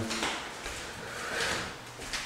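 A closet door being opened: a soft sliding, rubbing sound that swells briefly about halfway through.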